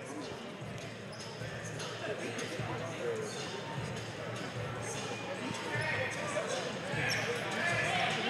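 Low murmur of indistinct spectator chatter in a crowded sports hall, growing slightly louder near the end.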